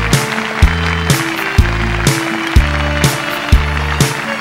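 Instrumental passage of a Korean trot song. A steady beat falls about twice a second over a moving bass line and sustained accompaniment.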